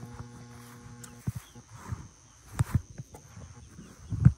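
Backyard chickens calling: a steady, low drawn-out note for about the first second, then a few short sharp sounds, likely footsteps on grass.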